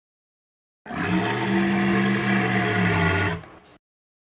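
A dinosaur roar sound effect: one long, steady roar that starts about a second in, lasts about two and a half seconds, then fades out.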